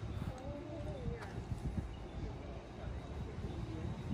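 Indistinct voices, too unclear for words, over low irregular rumbling and thuds.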